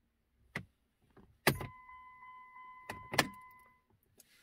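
Ignition key of a 2005 Jeep Grand Cherokee being turned off, to cycle the ignition after programming the tire size: clicks and jangling keys, with a loud click about one and a half seconds in. A steady electronic warning tone follows for about two seconds, and another sharp click comes about three seconds in.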